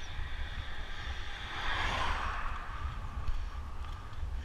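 Wind rumbling on a bike-mounted camera microphone while a car passes the other way, its tyre and engine noise swelling to a peak about halfway through and then fading.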